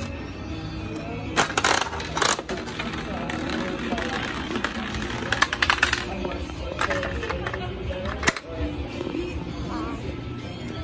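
A coin-operated spiral gumball machine in use: a quarter goes into the coin mechanism and the crank is turned with sharp metallic clicks, then a gumball rattles down the clear spiral track with a run of quick clicks. Music plays in the background.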